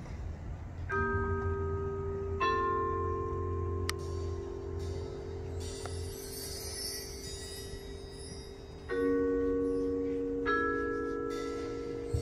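Quiet opening of a concert band piece: struck mallet-percussion chords ring and slowly fade over a low sustained drone, with new strokes about a second in, at about two and a half seconds, and again near nine and ten and a half seconds. A high shimmering wash sits in the middle stretch.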